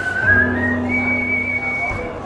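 A whistled melody: a single pure tone stepping upward in a few notes and holding a high note for about a second. Under it runs a low sustained instrumental note.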